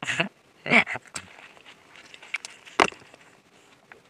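A short laugh in the first second, then a single sharp crunch about three seconds in as a Ritz cracker topped with spray cheese is bitten, with small mouth clicks around it.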